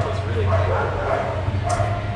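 A dog whining and yipping in a run of short, wavering, high calls, over a steady low hum.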